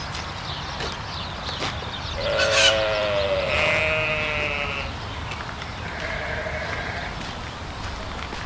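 A long, wavering bleat from livestock, starting about two seconds in and lasting a little over two seconds, followed near seven seconds by a fainter, shorter bleat.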